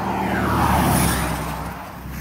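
A vehicle passing on the highway: a rush of road noise that swells to its loudest about a second in, falls in pitch as it goes by, then fades.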